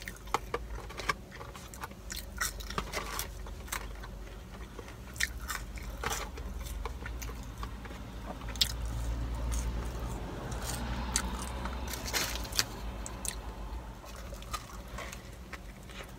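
A person chewing fast food close to the microphone, with many small wet clicks and crunches scattered throughout, over a steady low rumble.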